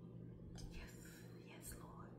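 Near silence: room tone with a low hum and two faint, brief soft swishes, about half a second in and near the end.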